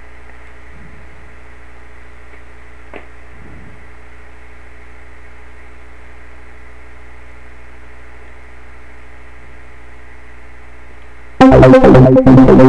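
Steady electrical hum with a faint click about three seconds in. Near the end a PoiZone software synthesizer note starts loud, its sound chopped into a stuttering rhythm by the trance gate.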